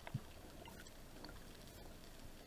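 Faint underwater ambience picked up by a camera housing: a low, even hiss with scattered faint clicks and one soft knock just after the start.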